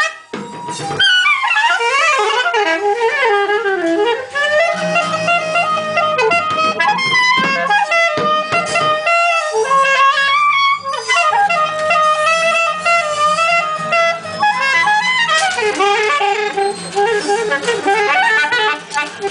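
Experimental free improvisation on wind and brass instruments: several horns sound overlapping held and wavering tones at once, sliding between pitches. The playing drops out for a moment at the very start, then comes straight back.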